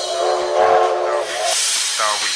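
Break in a house DJ mix: the kick drum drops out and a loud hissing noise sweep takes over with a held stack of low steady tones. The tones stop a little past halfway and the hiss carries on, brighter.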